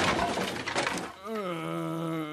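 Cartoon crash sound effect: wreckage breaking and clattering as the debris comes down, dying away about a second in. Then an animated character gives one long groan that dips in pitch and then holds steady.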